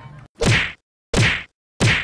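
Three punch sound effects, each a short, loud whack, about two thirds of a second apart.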